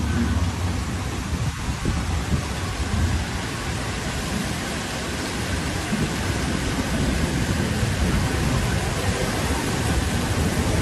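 Heavy rain and floodwater rushing through a street: a steady dense noise with a deep low rumble underneath.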